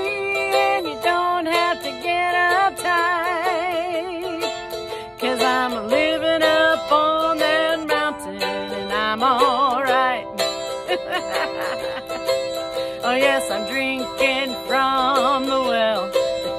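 A woman singing with a wide vibrato while strumming an acoustic guitar, the song running on without a break.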